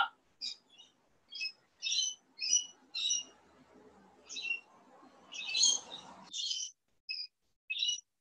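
A bird calling outdoors in a quick series of short, high chirps, about a dozen over several seconds. Under them is a faint low noise that cuts off suddenly about six seconds in.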